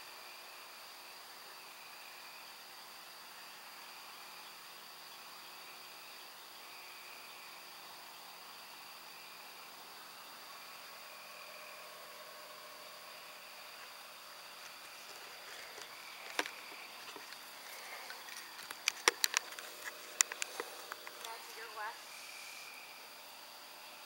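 Faint night insects: a steady high trill with a short chirp repeating every second or so. Late on, a handful of sharp clicks or snaps come in, the loudest a quick cluster near the end.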